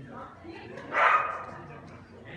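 A dog barks once, loudly, about a second in.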